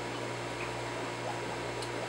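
A steady low hum with a faint hiss, unchanging, from a running background machine.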